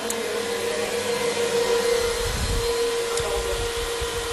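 Cooling fans of a multi-GPU cryptocurrency mining rig running: a steady whir with a constant hum-like tone. Low irregular rumbling comes in about halfway through.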